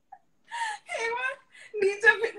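High-pitched laughter in two drawn-out, squealing bursts, about half a second and a second in, with a shorter one near the end.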